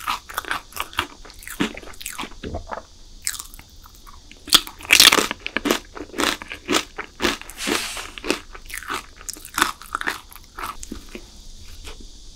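Close-miked chewing of a crunchy chocolate snack: a quick run of crisp crunches, loudest about five seconds in and again near eight seconds.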